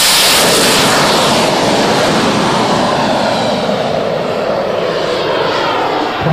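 Kerosene turbine engine of an RC Viper model jet at full power on its takeoff run: a loud jet rush that dulls and fades from about a second and a half in as the jet lifts off and climbs away.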